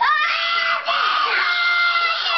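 A group of young boys shouting and yelling together, loud and raucous, with their voices piling on top of one another.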